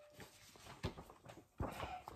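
Faint handling sounds of a picture book being picked up and held close: a few soft knocks and rustles, about a second in and again near the end.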